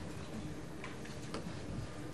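Quiet background of an analog tape recording: steady hiss and low hum, with a couple of faint ticks about a second in.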